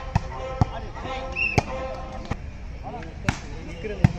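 Volleyball being struck by players' hands during a rally: about five sharp slaps, irregularly spaced, with players and onlookers shouting between them.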